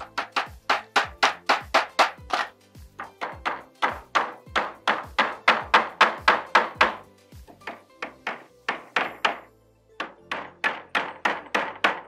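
Hammer driving nails into timber: runs of sharp strikes, about four a second, broken by a few short pauses.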